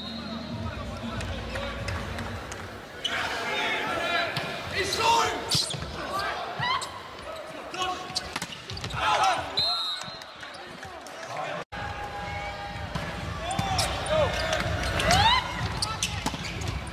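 Indoor volleyball rally sounds on a hardwood court: athletic shoes squeaking in short rising and falling chirps, ball contacts, and the arena crowd's voices throughout. A short high whistle sounds about ten seconds in.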